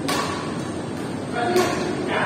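Badminton racket strikes on a shuttlecock during a rally: two sharp smacks, one right at the start and one about a second and a half later, over background voices.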